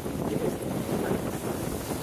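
Wind buffeting the microphone over choppy waves washing and splashing against the rocks at the foot of a pier.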